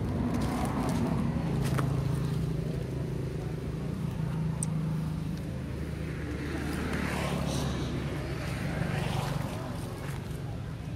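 A steady low engine-like hum, with faint higher calls or voices rising over it near the start and again near the end.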